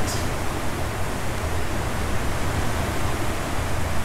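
Torrential rain pouring down steadily, a dense, even hiss.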